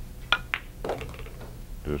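A pool cue's tip clicks against the cue ball, and about a quarter second later the cue ball clacks into the 8-ball on a draw shot.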